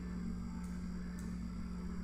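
Steady low electrical hum with a faint hiss under it, the background noise of the recording microphone.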